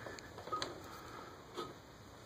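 A few faint metallic clicks, the last two with a brief ring, from a wrench working a steel bolt against the back of a Ford Model A flywheel to push it off its pins.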